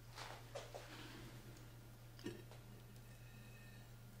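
Faint scrapes and light clicks of a metal spatula against a glass baking dish as a piece of brownie is lifted out, with a slightly sharper click a little past two seconds in. A steady low hum runs underneath.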